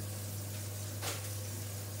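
Fish and red onion frying in a pan, a faint steady sizzle over a low steady hum, with one soft click about a second in.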